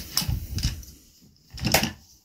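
Small metal bench vise being picked up and handled on a wooden workbench: a few short knocks and clatters, then one louder knock near the end.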